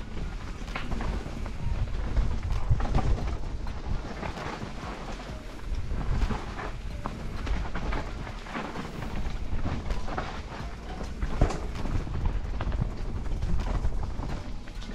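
Helmet-cam sound of a Scott Genius full-suspension mountain bike riding down a dirt trail: a constant low wind rumble on the microphone and tyre noise on dirt and leaves, with frequent clicks and rattles from the bike over the bumps.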